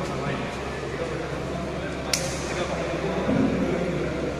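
Chatter of voices in a large indoor hall, with one sharp click about halfway through.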